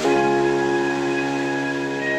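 Slow, gentle background music: a sustained chord that sets in at once and is held, moving to a new chord at the end.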